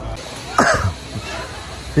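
A person coughing once, briefly, about half a second in.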